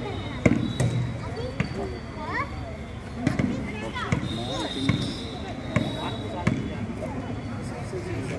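A basketball bouncing on a hard court: a series of sharp thuds, settling into an even dribble of about one bounce every 0.8 s in the second half. Voices chatter throughout.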